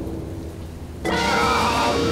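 Storm sound effect: a low thunder rumble under the hiss of heavy rain. About a second in, louder music comes in over the rain.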